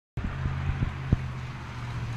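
A steady low hum under outdoor background noise, with a few short knocks from a handheld microphone being handled.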